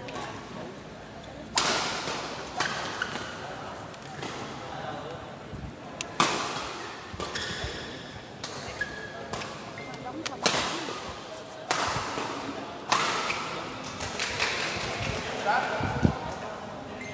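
Badminton rackets striking a shuttlecock in a rally: a series of sharp hits about every second or so, each with a short echo in the hall.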